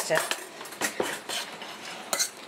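A ceramic dish clinking and knocking as it is handled while hot mozzarella curd is worked in it, with several short clinks in the first second and a half.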